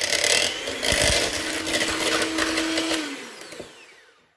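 AEG electric hand mixer running its twin beaters through butter and sugar in a mixing bowl, creaming them together. The motor whirs steadily, then winds down and dies away over the last second.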